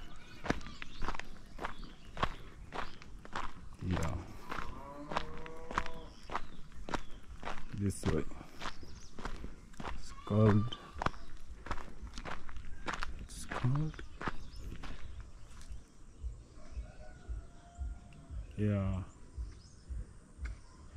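Footsteps on a stony dirt road at a steady walking pace, about two to three steps a second, with a few brief voice sounds in between.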